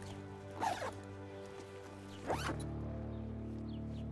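Zipper of a fabric duffel bag being pulled shut, a short zip a little over half a second in and a second sweep just after two seconds, over a steady film-score music bed whose bass deepens about two seconds in.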